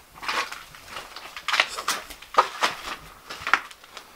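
Irregular clatter: about a dozen short knocks, scrapes and crunches in four seconds, as of objects handled or stepped on amid debris.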